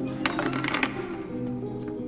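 Background score of low held notes, with a quick run of sharp clicks between about a quarter second and one second in.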